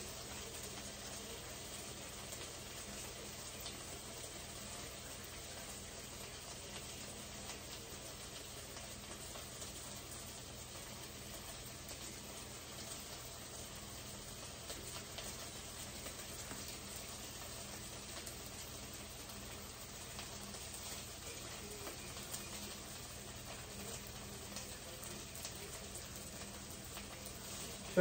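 Turkey burgers sizzling faintly and steadily in a skillet, with light scattered crackles of frying fat.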